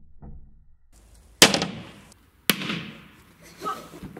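A billiard ball striking a pane of tempered safety glass twice, about a second apart: two sharp cracks, each with a short fading ring, and the glass does not break.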